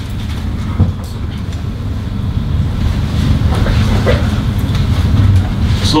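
A steady low rumble that grows slightly louder over the few seconds, with a couple of faint clicks.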